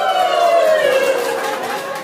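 A group of young people shouting together in one long held call that falls slowly in pitch, with hand clapping.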